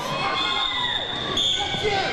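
A referee's whistle blown in one long, steady high blast lasting about a second and a half, over crowd noise and faint voices in a large sports hall.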